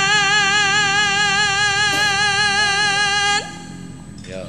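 A sinden (female Javanese gamelan singer) holds one long sung note with a wide, even vibrato into a microphone. The note breaks off about three and a half seconds in with a short upward slide.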